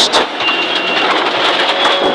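Subaru Impreza N14's turbocharged flat-four engine and tyre-on-gravel noise heard from inside the rally car's cabin at speed, with a faint high whine over the steady din.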